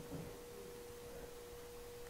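Quiet room tone with a faint, steady high-pitched hum at one pitch, and a faint soft knock just after the start.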